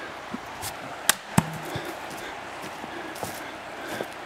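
Footsteps on a forest trail over a steady hiss, with two sharp snaps about a second in, a third of a second apart, and a few lighter ticks.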